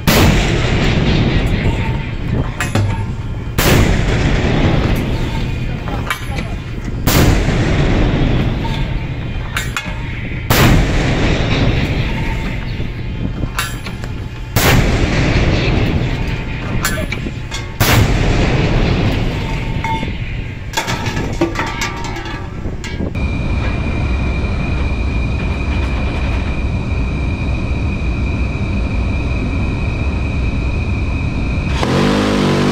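A warship's deck gun firing six rounds, about one every three and a half seconds, each a sharp boom that dies away over a second or so. After the last shot a steady noise with a thin high tone fills the last seven seconds.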